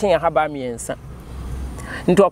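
A voice speaking for about the first second, then a pause filled by a low, steady background rumble.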